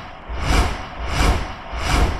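Rhythmic whoosh sound effects over a deep thudding low end, one rising-and-falling swell about every three-quarters of a second, as in a motion-graphics intro.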